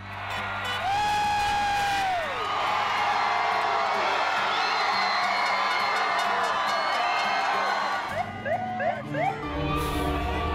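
A large crowd cheering and screaming, with a long whoop held and falling away about two seconds in; the roar thins out after about eight seconds into scattered short shouts. Background music plays underneath.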